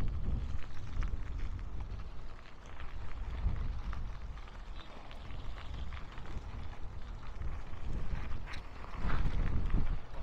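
Wind on the microphone with a steady low rumble from moving along a gravel road, and a few faint small ticks.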